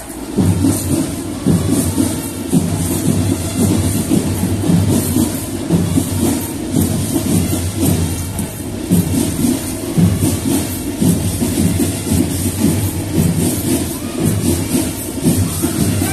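Marching band playing a driving rhythm, led by drums with cymbals, loudest in the low drum range and pulsing steadily.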